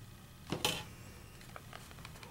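A short rustle about half a second in as a thin plastic stencil is lifted and peeled away from paper held by sticky notes, followed by a couple of faint handling ticks.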